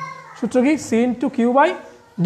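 Speech only: a voice talking in short syllables that rise and fall in pitch.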